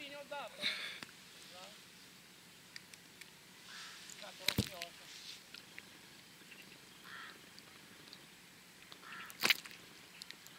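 Two sharp knocks, one about halfway through and a louder one near the end, over quiet outdoor ambience with a few faint calls in the first couple of seconds.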